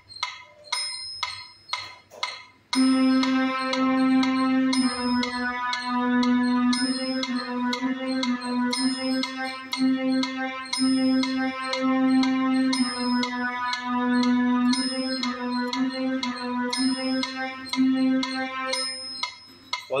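A metronome clicking about two beats a second, with a higher accented click every fourth beat. About three seconds in, a Casio CT-X700 electronic keyboard joins it with a slow beginner exercise of low, held notes played in time with the click, stopping shortly before the end.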